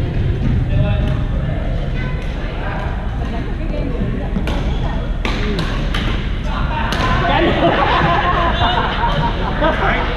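Badminton rackets hitting a shuttlecock: a quick run of sharp cracks about halfway through, in a large echoing gym hall, amid people talking.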